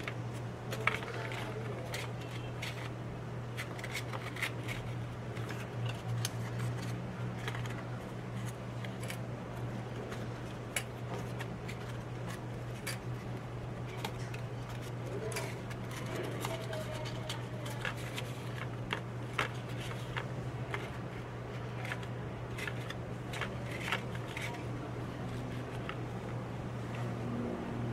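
Mini clothespins being unclipped from a folded paper clover and the stiff paper handled, giving scattered small clicks and rustles over a steady low hum.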